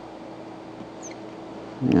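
Lecture-room tone with a steady low hum, broken about a second in by a faint, short, high squeak. Near the end a man's voice says "yeah".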